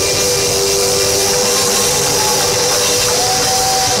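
Live church band (singers, keyboard, electric guitars and drums) playing a Christmas song loudly, with long held notes sustained over the full band; a second, higher held note comes in about three seconds in.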